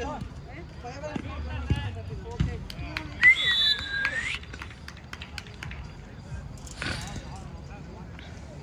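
Players calling out during a soccer game, with two dull thuds of the ball being kicked a second or two in. About three seconds in comes a loud whistle lasting about a second, its pitch rising briefly and then falling.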